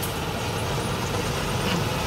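Steady running of diesel farm machinery: a combine harvester at work, with a tractor engine close by.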